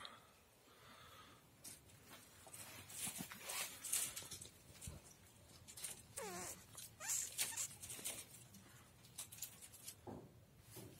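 Soft rustling and scraping of gloved hands pressing loose soil around a transplanted tomato seedling. A short gliding animal call sounds about six seconds in.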